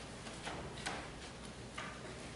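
Quiet room noise of a seated congregation with three faint, sharp clicks, as small communion cups and trays are handled while the elements are passed along the pews.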